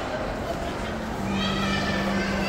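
Voices in a busy indoor space. A little past a second in, one drawn-out, steady-pitched voice begins and holds its note.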